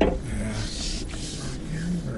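Cab noise of a 2018 Ford F-150 creeping over a rough dirt trail: a steady low rumble of engine and tyres, with a sharp knock from a bump right at the start.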